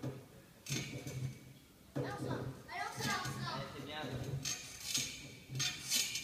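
Voices calling encouragement ("Allez") over a steady low hum, with a few short clicks.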